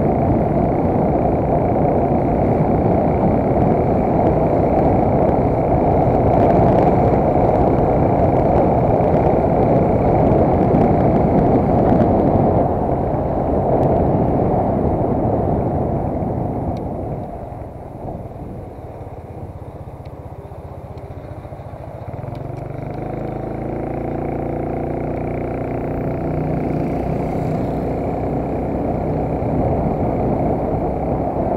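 A road vehicle driving along a street, with a loud, steady rushing noise from its motion. About halfway through the sound eases off as it slows. Then a steady engine hum with a clear pitch comes up as it picks up again.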